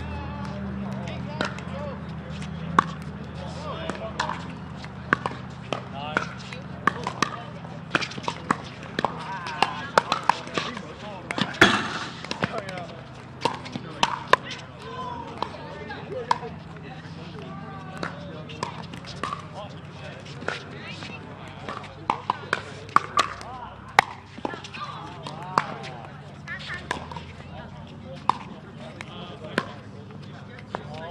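Pickleball paddles hitting the hard plastic ball on several courts at once: a run of sharp, irregular pops of varying loudness, some close and many distant. Players' voices murmur behind them.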